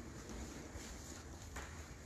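Faint footsteps on a bare hardwood floor, with one clearer step about one and a half seconds in.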